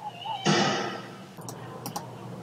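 Cartoon sound effects: a short wavering tone, then a loud, sudden sound about half a second in that fades away, and a few sharp clicks near the end.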